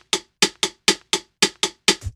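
A programmed drum pattern playing back from the music software: a single short, dry drum hit repeating evenly about four times a second, with no kick or bass under it.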